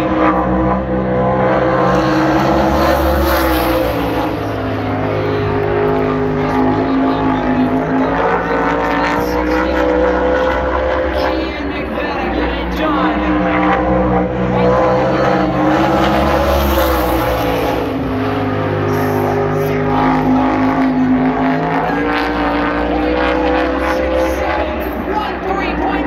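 Winged sprint car's V8 engine at speed on a paved oval during a qualifying lap. The pitch drops as the driver lifts for the turns and climbs again down the straights, in a cycle of about 13 seconds per lap. The car passes close twice, about 3 seconds and 16 seconds in.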